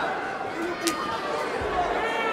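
Arena crowd chatter and shouted voices around a fight cage, with one sharp slap of a strike landing about a second in.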